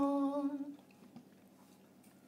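A lone female voice, unaccompanied, holds the last long note of a sung phrase of a traditional Galician ballad; it dies away within the first second, leaving near silence.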